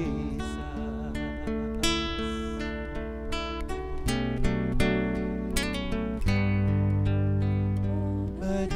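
Acoustic guitar playing sustained chords and single notes in a worship song, an instrumental passage between sung lines.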